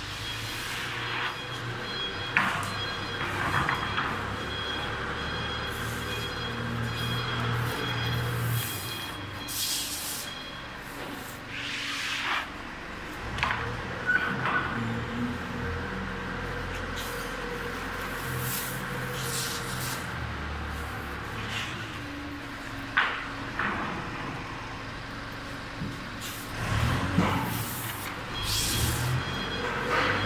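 Plywood hot press machinery running, a steady low hum broken by short, sharp hissing bursts every few seconds.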